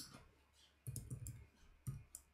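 Faint clicking of a computer keyboard being typed on: a quick run of keystrokes starting about a second in, after a single mouse click.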